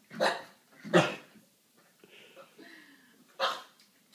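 Puppy barking at a toy ball: three short barks, one at the start, one about a second in and one near the end, with quieter sounds between.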